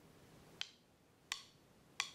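Faint metronome clicks on a steady beat, about one every 0.7 seconds, keeping the marching tempo ahead of the counted command.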